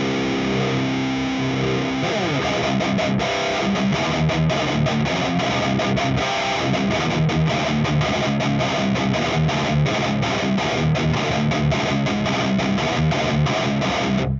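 Distorted electric guitar in drop C through a high-gain amp and the MIKKO2 simulation of a 5151 4x12 cabinet miked with a Dynamic 7B. It opens on a held chord, slides down about two seconds in, then plays a fast chugging riff that cuts off just after the end.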